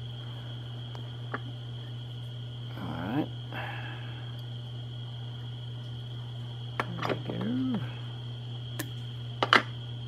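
Steady low hum with a constant thin high whine over it. Two short murmured vocal sounds, about three seconds in and again around seven to eight seconds, and a sharp click near the end.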